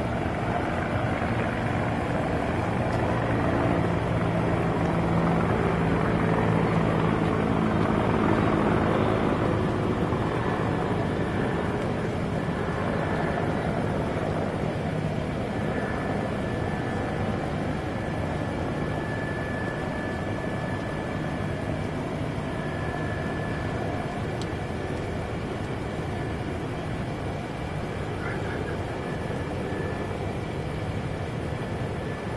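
An aircraft engine passing, growing to its loudest about eight seconds in and then fading, over a steady rushing noise.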